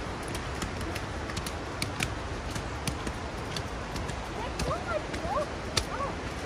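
Footsteps of several people climbing stone steps on a leaf-strewn trail, a scatter of light clicks and scuffs over steady background noise. Faint voices are heard briefly about four to five seconds in.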